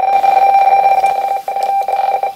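RTTY radio-teletype signal on 7.646 MHz played from a shortwave receiver's speaker: a steady two-tone warble that flips rapidly between the two frequency-shift tones.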